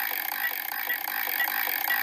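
Transition sound effect: a thin, rattling mechanical texture with no bass, short high blips about twice a second and a steady high hiss.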